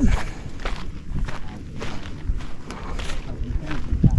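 Footsteps walking on a sandy desert trail, a steady pace of about two to three steps a second.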